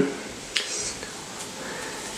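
Playing cards being handled: one light click about half a second in as a card is pushed across the deck, then low hiss.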